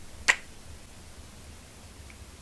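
A single short kiss smack as lips are pressed to and pulled off the back of a hand, about a quarter second in.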